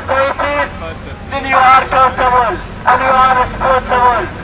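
A man speaking loudly through a handheld megaphone, his voice thin and tinny with almost no low end, in phrases with short pauses between them.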